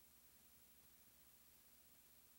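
Near silence: faint steady hiss with a low hum, the background noise of a VHS tape transfer.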